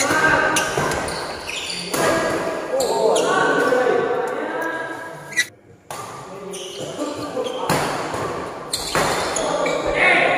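Badminton rally in an echoing indoor hall: sharp racket strikes on the shuttlecock and players' footwork on the court, with voices calling out over it. The sound drops out almost completely for about half a second just past halfway.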